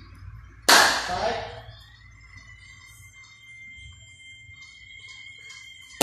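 A loud shouted drill command about a second in, then a faint steady high-pitched whine over a low hum until a second shouted command, "Side", at the very end.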